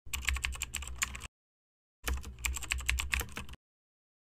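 Computer keyboard typing: two quick runs of key clicks, the second starting about two seconds in, with silence between them.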